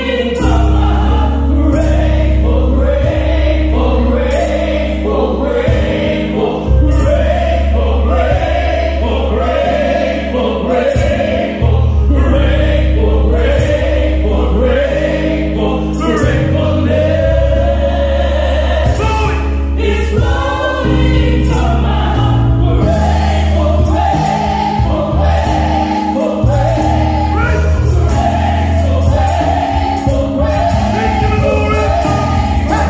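Gospel choir singing over a band, with a strong sustained bass and a steady drum beat.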